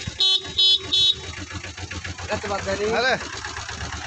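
Motorcycle horn beeped three times in quick succession, short sharp toots, with the motorcycle's engine idling underneath.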